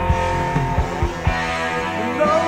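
Rock band recording playing an instrumental passage: electric guitar over bass and a steady drum beat, with no singing in this stretch.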